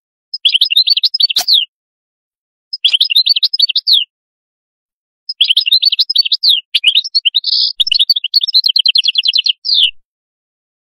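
European goldfinch singing in three bursts of rapid twittering song, the last running about five seconds: song of the kind that Maghrebi goldfinch keepers call 'qadous'. A sharp click comes about a second and a half in.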